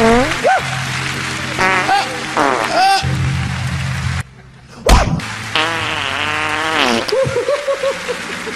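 Comedy fart sound effects: a string of buzzing, wobbling farts over steady background music. The sound drops out briefly about four seconds in and ends in a sharp, loud crack.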